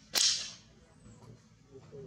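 One sharp, sudden snap just after the start, dying away within about half a second.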